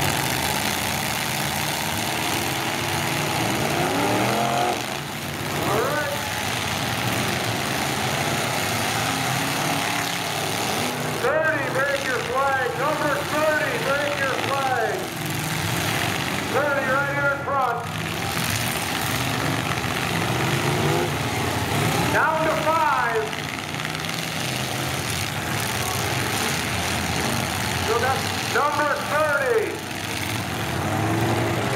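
Several full-size demolition derby cars' engines running hard together, with repeated revs rising and falling in pitch as the cars push and ram on the dirt arena.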